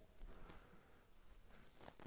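Near silence: room tone, with a few faint soft sounds in the first half second.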